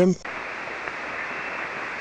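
Steady hiss of band noise from a ham radio receiver on 7.188 MHz single sideband with no station transmitting, cut off above about 3 kHz by the receiver's narrow passband.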